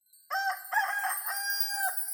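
A rooster crowing once, a cock-a-doodle-doo of about a second and a half that starts a moment in, used as a daybreak cue.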